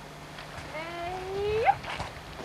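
A single drawn-out vocal call, about a second long, that climbs slowly in pitch and then sweeps sharply upward just before it stops.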